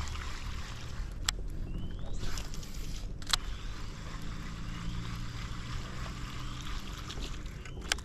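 Steady outdoor hiss of wind and moving water, broken by three sharp clicks: about a second in, a few seconds later, and at the very end. A faint low hum runs through the middle.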